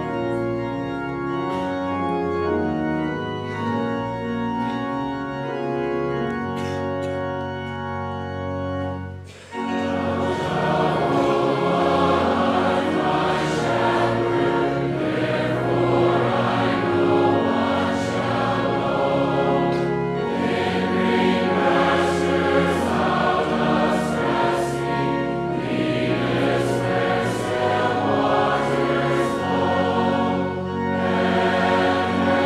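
Organ playing held chords as an introduction. After a brief break about nine seconds in, the congregation joins in, singing a Psalter psalm-setting in unison with the organ.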